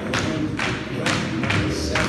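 Tap shoes of several dancers striking a stage floor, clusters of taps about twice a second, over recorded backing music.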